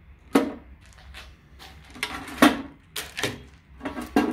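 Handling noise from a small output transformer and its leads being moved about and set down on a bare metal amp chassis: several separate sharp knocks and clicks, the loudest about halfway through.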